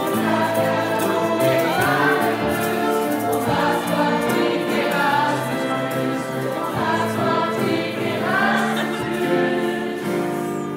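Live performance of a song: voices singing together as a group over grand piano, violins and hand drums.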